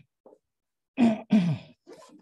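A person's voice: two short, loud vocal sounds about a second in, the second falling in pitch, with no clear words.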